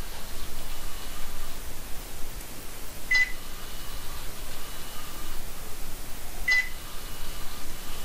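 Two short, high electronic beeps about three and a half seconds apart, from the buzzer of a Makeblock mBot educational robot, over steady room noise.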